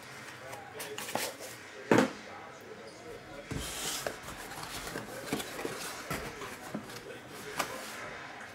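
A small cardboard box being handled and opened: a sharp knock about two seconds in, then scattered light taps and rustles as the lid comes off and the foam padding is lifted out.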